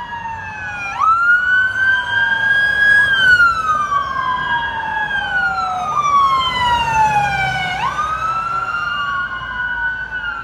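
Two police pickup trucks' electronic sirens wailing together out of step. Each rises quickly and then falls slowly in pitch, repeating every few seconds.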